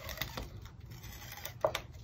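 Adhesive tape runner pressed and drawn along paper card stock: faint scratchy rubbing with light clicks, and a couple of small knocks near the end.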